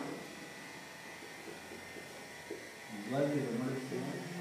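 Writing on a board during a lecture: a dense run of faint, short scratches and taps lasting about three seconds, followed by a man's voice near the end.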